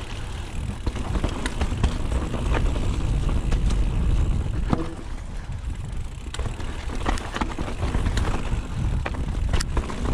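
Mountain bike riding down a rocky dirt trail: a heavy, steady rumble of wind on the camera microphone, with tyres crunching over stones and frequent sharp clicks and rattles from the bike over the bumps.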